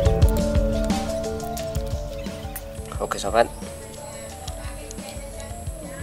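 Background music fading out over the first half, then a brief spoken word a little after three seconds in.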